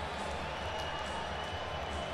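Ice hockey arena crowd noise, a steady, even murmur with no cheering peak, as from home fans after the visiting team has scored.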